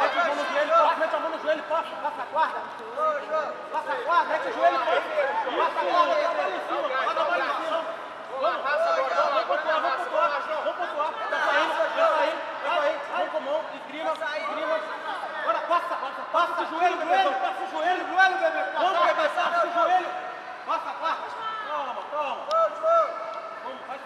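Several men's voices talking and shouting over one another, with crowd chatter and some laughter.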